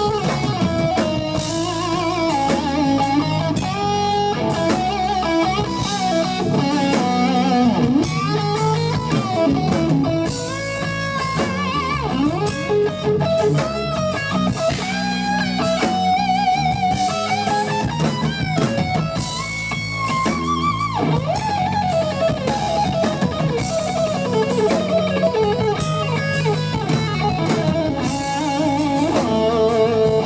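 Instrumental rock played live by a trio: an electric guitar plays a melodic line with bent and wavering notes over bass guitar and drum kit, without pause.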